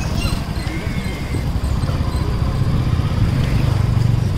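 Motorcycle riding at low speed, a steady low engine and road rumble picked up by a phone mounted on the bike, growing a little louder near the end.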